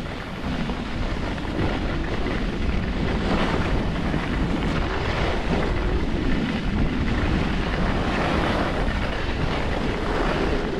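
Wind rushing over the microphone during a downhill ski run, with the hiss of skis sliding over snow, swelling and easing a little from moment to moment.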